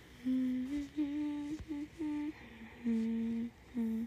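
A young woman humming a simple tune to herself: a few held notes in short phrases, with brief pauses between them.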